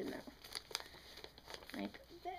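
A sheet of paper crinkling as it is folded, a corner brought to the middle and creased by hand, with a few short crisp crackles.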